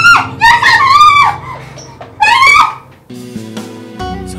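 Several short, very high-pitched vocal cries, each rising and falling in pitch, over background music. The cries stop about three seconds in, leaving the music alone.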